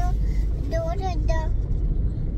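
Steady low rumble inside a car's cabin, with a small child speaking briefly over it.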